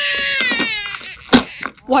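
A baby crying: one long wailing cry that slowly falls in pitch and fades about halfway through. It is followed by a short, sharp, loud sound.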